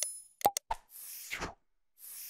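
Sound effects of an animated subscribe-button graphic: a few quick clicks and pops in the first second, then a soft whoosh.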